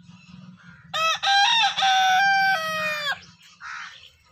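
A rooster crowing once, a call of about two seconds that begins about a second in.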